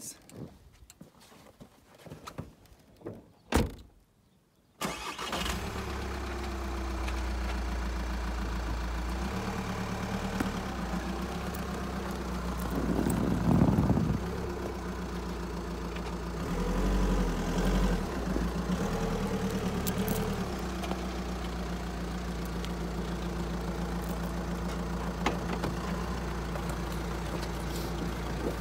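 Van engine running steadily as the van is driven forward and back a few metres on snow chains, so that the newly fitted chains settle and can be tightened. It comes in abruptly about five seconds in after a few faint knocks, and its note swells briefly about halfway through and again a few seconds later.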